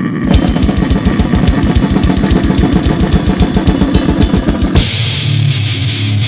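Fast death-metal drumming on a full kit: rapid, even bass-drum strokes under crashing cymbals, with guitar in the mix. The drumming stops abruptly a little before the end, and a sustained low droning sound carries on.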